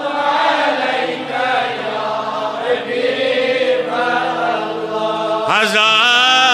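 A man's voice chanting a melodic recitation through a PA system, the pitch wavering and ornamented, over steady low sustained tones. A louder, higher phrase begins near the end.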